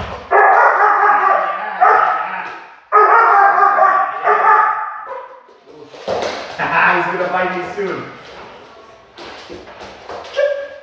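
Malinois puppy vocalizing in three bouts of a second or two each while it jumps up and mouths at its handler's hand during heel training.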